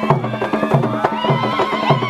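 Kavango traditional dance music: drums beating about three times a second, with sharp clicking percussion, under a high held call that slides up in pitch about a second in.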